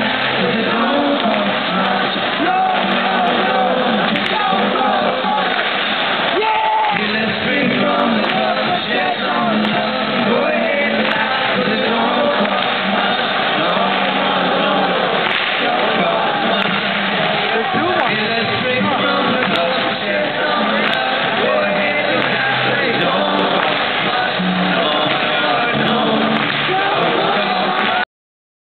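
Live band playing acoustic guitars and singing, with audience noise mixed in. The sound is dull, with little treble.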